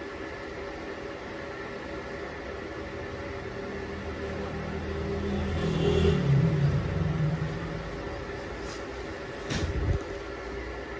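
Steady drone of factory machinery holding several fixed tones. About halfway through a louder swell rises and then falls in pitch, and a short sharp noise comes near the end.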